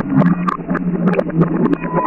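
Water pouring and splashing onto a heap of pearl beads, with many small, dense clicks as the beads knock together.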